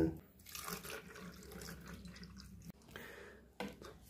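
Faint wet sounds of water being added to a plastic tub of swollen diaper absorbent-gel crystals and stirred in with a metal spoon, with a short tap near the end.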